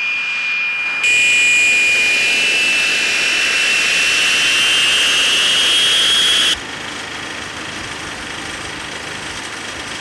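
The twin Rolls-Royce Viper turbojets of a Soko J-22 Orao whining as the jet taxis. The whine rises slowly in pitch for several seconds over a steady rush, then drops suddenly to a quieter, steady rush.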